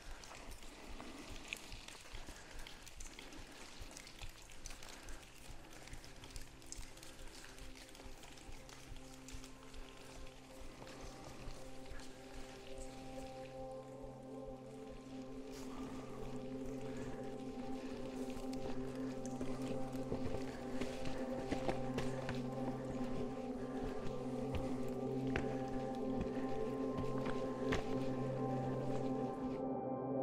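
Background music of sustained, held chords that fades in a few seconds in and grows steadily louder, over faint scattered clicks.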